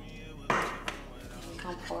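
Whisked eggs poured from a bowl into a frying pan of hot melted butter, landing with a sudden splash about half a second in, followed by a short click of the spatula against the bowl.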